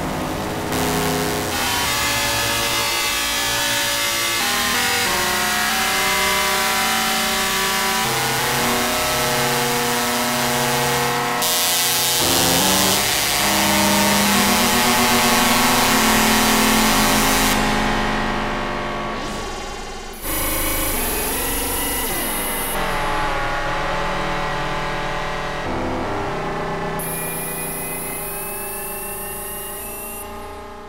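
Eurorack modular synthesizer playing harsh, dense FM tones from a keyboard: an E-RM Polygogo oscillator frequency-modulated by a WMD SSF Spectrum VCO and run through two Mutable Instruments Ripples filters. A bright hissy layer swells in about a third of the way through. The sound breaks off sharply around two-thirds in and restarts, and thin rising glides appear near the end as it slowly fades.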